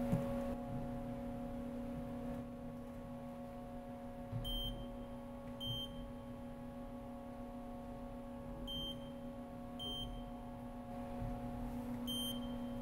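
Steady hum of a Haas CNC vertical mill running a spindle-probe cycle. Four short high beeps come in two pairs about a second apart, as the probe touches off the part.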